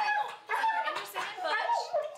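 Pit bull mix dog talking: a few drawn-out vocal sounds that bend up and down in pitch, with short gaps between them.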